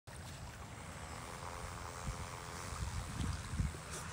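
Radio-controlled float plane's motor and propeller buzzing faintly and steadily as it taxis on the lake, under gusty wind rumbling on the microphone.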